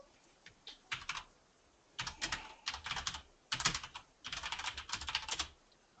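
Typing on a computer keyboard in three quick runs of keystrokes, the longest near the end.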